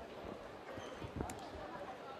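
Voices murmuring and calling out in a fight arena, with a few dull thuds from the kickboxing ring. The sharpest thud comes a little over a second in.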